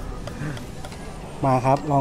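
Steady low background rumble with a man's voice saying a short phrase near the end.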